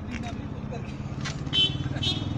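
A vehicle engine running steadily, a low hum under indistinct voices, with a short louder sound about one and a half seconds in.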